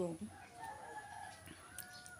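A faint, wavering animal call lasting about a second and a half.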